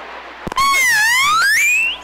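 A loud whistle-like tone that starts about half a second in, dips slightly in pitch, then glides steeply upward for about a second before cutting off.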